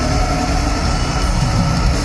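Heavy metal band playing live and loud through an arena PA, guitars and heavy bass dense and continuous.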